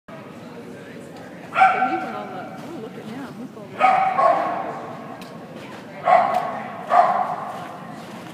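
A dog barking four times, high-pitched, each bark echoing in a large indoor hall.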